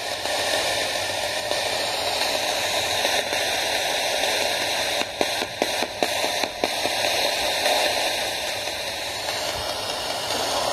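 Steady radio static from a hacked Radio Shack 12-587 radio sweeping through stations, played out through the speaker of an IDC Direct Linc FX ITC device. The hiss briefly drops out several times about halfway through.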